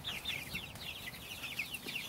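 A flock of four-and-a-half-week-old Cornish Cross broiler chicks peeping: many short, high, falling peeps overlapping without a break.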